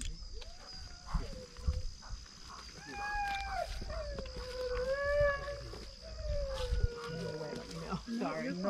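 German shorthaired pointer whining in four long, high, drawn-out cries that slide down in pitch, the sound of an eager dog held on a lead at the water's edge.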